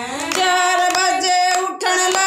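Women singing a Hindi devotional bhajan together on long held notes, with steady hand clapping keeping the beat.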